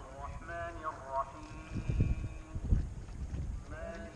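Wind buffeting the microphone in gusts, loudest about two seconds in and again near three seconds, with faint voices in the first second and a faint held tone after it.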